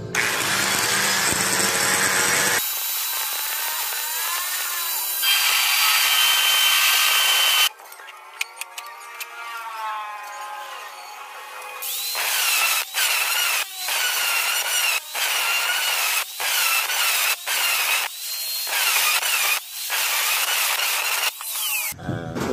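Electric drill spinning a metal part clamped in its chuck, used as a makeshift lathe, with high-pitched metal squealing that wavers in pitch. The sound changes suddenly several times. In the second half it comes in short stretches with abrupt breaks between them.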